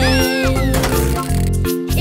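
Children's song backing track without vocals, with a cartoon cat meowing once near the start, its pitch rising and then falling.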